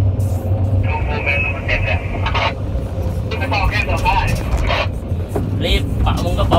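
Hydraulic excavator's diesel engine running steadily under load, heard from inside the cab, as the machine swings a bucketful of soil over to a dump truck.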